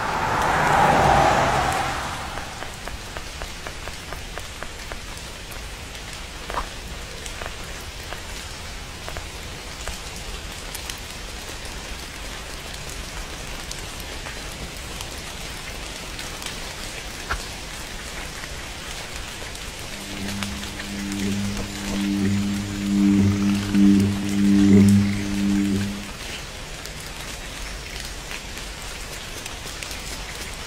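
Rain falling steadily, with scattered single drips. It opens with a brief louder swell of noise, and from about twenty seconds in a low pitched hum pulses for about six seconds before stopping.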